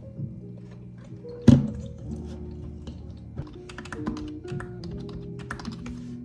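Background music with sustained notes, a single loud thud about a second and a half in, then typing on a computer keyboard: a quick run of key clicks from about halfway on.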